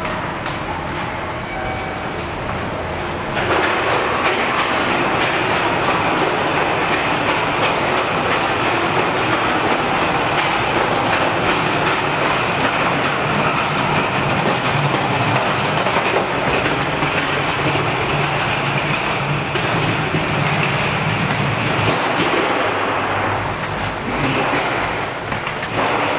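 Rubber-tyred Sapporo Tozai Line subway train running through the station, a loud steady rushing noise that comes in abruptly a few seconds in and holds.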